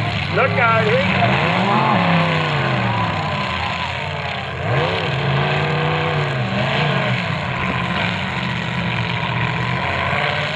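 Engines of several demolition derby cars revving up and down together, their pitch repeatedly rising and falling as the cars accelerate and back off.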